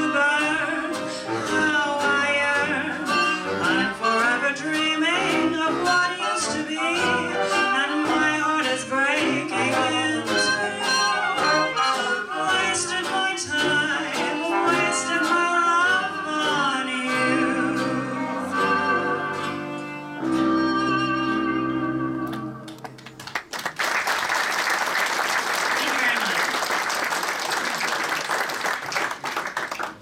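A woman singing a vintage jazz song with a small classic-jazz band of trumpet, trombone, reeds, violin, piano, guitar and drums. The tune closes on long held chords, then audience applause takes over for the last several seconds.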